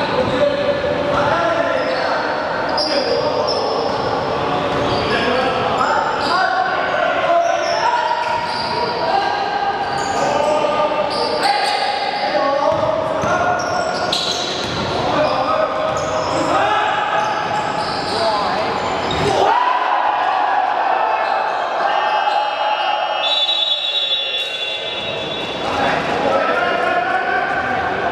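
Basketball bouncing and dribbling on a wooden gym floor during play, mixed with players' voices calling out, all echoing in a large hall.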